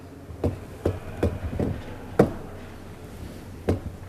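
About six sharp, irregular taps on a laptop's keys or trackpad button, picked up by the podium microphone over a low room hum. The loudest tap comes about two seconds in and the last one near the end.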